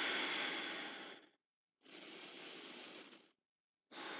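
A woman's deep breathing: a long, louder breath fading out about a second in, then a second, quieter breath, with dead silence between them.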